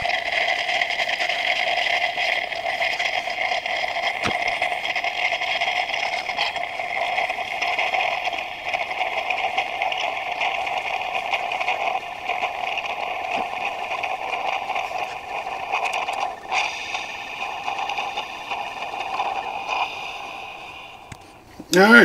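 Mellif 20-volt battery-powered single-serve coffee maker bubbling steadily as it brews, fading and stopping about twenty seconds in as the brew cycle ends.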